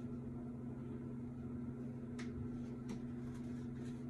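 A steady low hum with a few fixed low tones, like a small motor or electrical hum, with two faint light ticks about halfway through.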